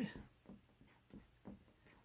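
Black felt-tip marker drawing short strokes on paper: a series of faint, quick scratches, about three a second, as a row of small vertical ticks is marked.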